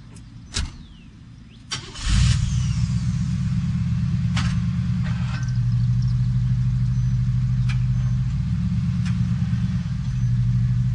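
A car door shuts with a knock, then about two seconds in an old sedan's engine starts with a short burst and settles into a steady idle.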